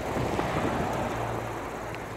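Steady low vehicle engine hum under a faint even hiss.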